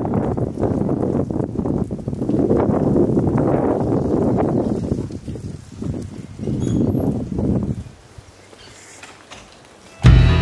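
Wind buffeting the camera microphone in gusts, dying away about eight seconds in.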